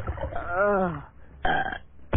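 Cartoon boy's voice giving a strained, gulping cry that rises and then falls in pitch, his reaction to swallowing hot sauce, followed about a second and a half in by one short hiccup: the hiccups are not cured.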